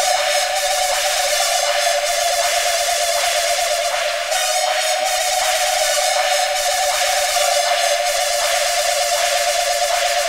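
Hardcore electronic track in a breakdown: a sustained mid-pitched synth drone with a washy high shimmer over it, and no kick drum or bass.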